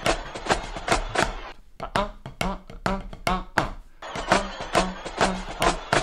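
Marching drumline playing a battle cadence: fast, sharp snare strokes over low pitched drum notes that recur at a steady rhythm.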